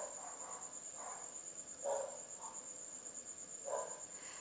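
Faint, steady, high-pitched drone of insects at dusk, with three short, lower calls about two seconds apart.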